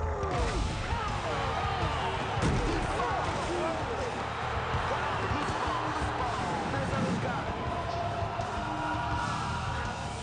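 Film soundtrack of a football play: many voices shouting and yelling over music, with a heavy thud of a tackle about two and a half seconds in.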